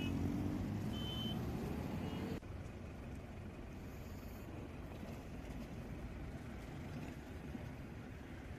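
Road traffic: cars and SUVs driving past, a steady rumble of engines and tyres. It drops suddenly quieter about two and a half seconds in.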